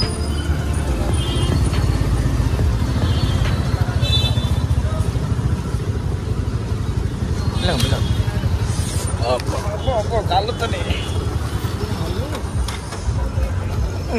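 Motorcycle running while being ridden, heard from the pillion seat as a steady low engine-and-wind rumble that eases off near the end as the bike slows. A few brief high beeps come early on.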